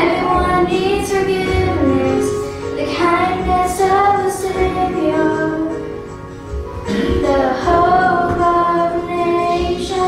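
A young girl singing a worship song into a microphone over instrumental accompaniment with sustained chords and bass, with a short pause between phrases partway through.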